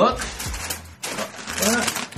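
Tissue paper rustling and crinkling in quick, irregular crackles as a shoebox lid is lifted and the wrapping is pulled back.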